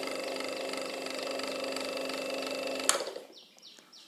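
Wall fan motor, blade removed, running on mains power with a steady hum: the abnormal noise of a worn shaft and bush. It cuts off with a click about three seconds in and dies away.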